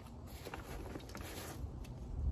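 Faint handling noise: a few light clicks and rustles as a small battery holder is turned over in the hands, over a low, steady outdoor background.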